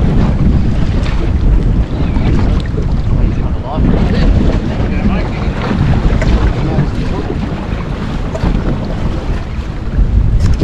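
Gusty wind buffeting the microphone over choppy sea water washing around a small boat.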